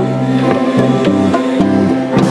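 Live band playing: piano and bass with congas struck in a steady rhythm over them.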